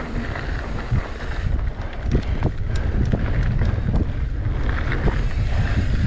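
Wind buffeting the microphone and tyres rolling over a dirt trail on a fast mountain-bike descent, with scattered knocks and rattles from the bike over bumps.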